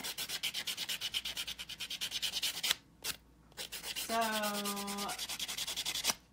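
Nail buffer block rasping over a dip powder nail in quick back-and-forth strokes, several a second, smoothing the hardened powder. The strokes pause briefly a little under three seconds in, then resume.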